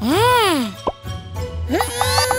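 Cartoon sound effects over light background music: a pitched swoop that rises and falls over most of a second, then a quick upward blip, and a held tone near the end.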